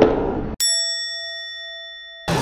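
A single bell-like ding, struck once about half a second in and left to ring with a slow, clean fade. It starts right after the earlier sound cuts off abruptly, as an edited-in sound effect would.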